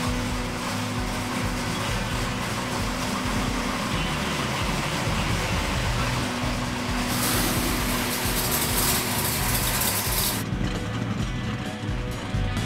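Engine of a restored 1969 Dodge Charger Daytona running, a steady low rumble with a louder, rushing stretch from about seven to ten seconds in.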